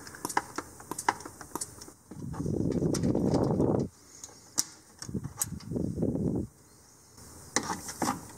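Small metallic clicks and taps as fingers work a retaining clip off a turbo wastegate actuator rod. About two seconds in a rough, rasping sound lasts over a second, and two shorter ones follow around five to six seconds in.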